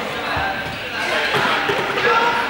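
Balls bouncing on a sports hall floor, with a couple of low thuds, among the overlapping voices of many students, echoing in the large hall.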